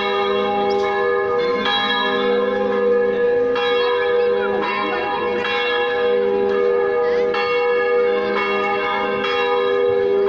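Church bells ringing, struck about once a second, their tones overlapping and ringing on between strikes.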